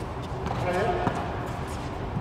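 Indistinct voices of children and a coach during a tennis practice, with a single tennis-ball bounce about a second in.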